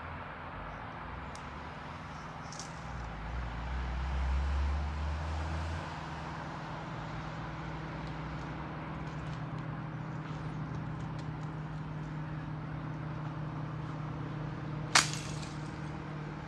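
Steady hum of distant road traffic, with a low rumble swelling and fading a few seconds in and faint scattered clicks and knocks. Near the end, one sharp crack as the pond's ice is broken at its edge.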